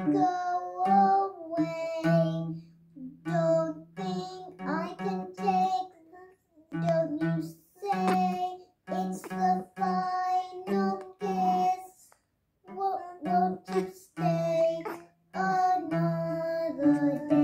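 A child singing a song in short phrases with brief pauses, accompanied by an acoustic guitar.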